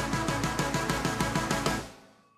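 Fast band music from a synth, bass and drums trio: a rapid repeating low figure over steady drum hits, dropping out just before the end.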